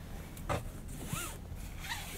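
Seatbelt webbing being pulled out of its retractor and drawn across the body: a rasping, zipper-like slide with a few light clicks.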